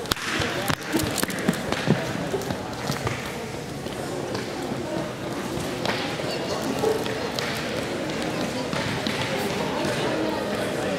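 Indistinct talking of several people, with a few sharp knocks in the first two seconds.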